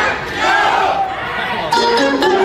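Many guests' voices talking at once in a crowded hall. Near the end a music backing track starts with a sudden rise in level.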